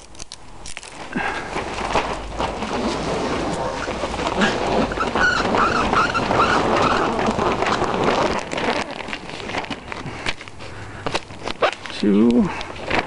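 Plastic sheeting over PVC hoops rustling and crinkling as it is handled and pulled down to close up the side of a cold frame; the noise grows loud about a second in and eases off after about 9 seconds.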